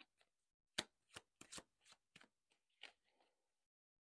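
Faint, scattered taps and flicks of a deck of angel-number cards being shuffled and handled by hand, the loudest about a second in.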